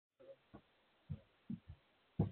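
Footsteps of a person climbing wooden porch steps: a few faint, dull thumps about half a second apart.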